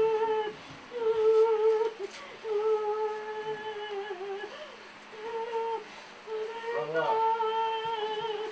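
Voices humming or singing a slow tune in long held notes at nearly the same pitch, each about a second long with short breaks between.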